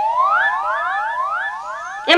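Comedy sound effect: a quick run of overlapping rising whistle-like glides, one after another about every quarter second, fading a little toward the end.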